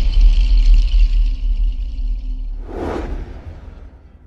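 Cinematic logo sting: a deep rumbling bass under a shimmering high sustain, with a whoosh about three seconds in, the whole fading out toward the end.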